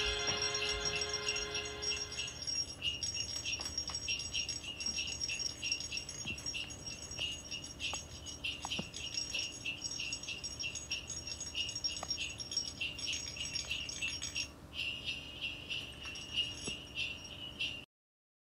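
The last held chord of a song fades out over the first couple of seconds, then jingle bells shake in a fast, even rhythm, with a brief dip about three-quarters of the way through, and stop suddenly just before the end.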